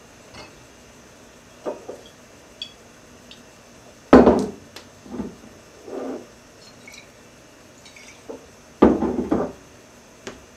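Glasses and bottles knocked and clinked on a bar while a cocktail is mixed: scattered short knocks, the loudest about four seconds in, and a quick run of knocks near the end.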